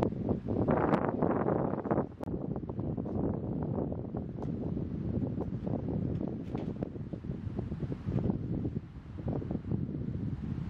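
Wind gusting over the microphone, a rough rumbling rush that is strongest in the first couple of seconds, with a few faint knocks scattered through.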